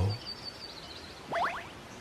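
A quiet pause in a forest ambience, with one short, quickly rising bird chirp about one and a half seconds in.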